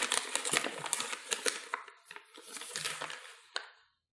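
Paper wrapper of a ream of A4 copy paper being torn open and crinkled: a run of crackling rips that dies down about two seconds in, a second, quieter stretch of rustling, and a sharp click, cutting off abruptly just before the end.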